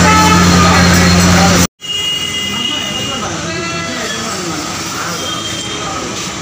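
A loud, steady low electrical-sounding hum under a man's voice, which stops with a sudden cut about a second and a half in. After the cut come quieter background voices of people at a dining table.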